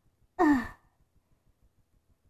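A child's short voiced sigh, falling in pitch, about half a second in.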